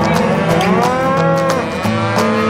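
Cattle bawling: one long moo, starting about half a second in, that rises and then falls in pitch.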